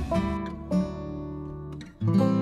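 Background music: a plucked acoustic guitar playing a few notes that ring and fade.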